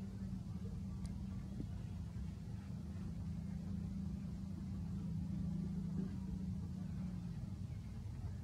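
A steady low motor hum over a low rumble, stopping about seven seconds in.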